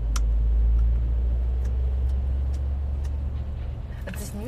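Low rumble of a car engine close by, swelling in the first second and then slowly easing, with a few faint scattered clicks.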